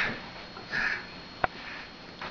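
Two short breathy sniffs about a second apart, followed by a single sharp click.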